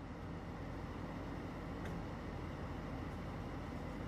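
Steady low rumble of outdoor background noise picked up by a phone's microphone, with a faint click about two seconds in.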